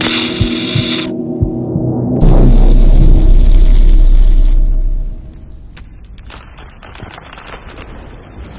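Animated logo sting sound design: a bright hissing whoosh of about a second, then a loud deep boom about two seconds in that rumbles for around three seconds, followed by quieter scattered crackles of sparks fading away.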